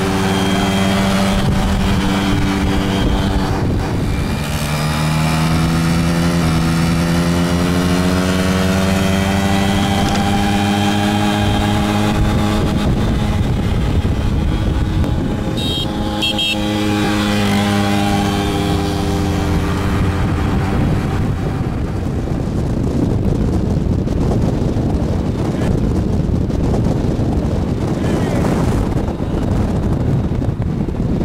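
Yamaha two-stroke moped engine running at riding speed alongside a car, its pitch slowly rising and falling as the throttle changes, heard through the car's open window. Wind noise on the microphone grows over the last third.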